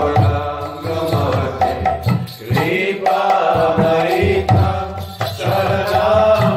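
A man's voice singing a Hindu devotional chant, Vaishnava kirtan style, in long melodic phrases over a light, steady percussive beat.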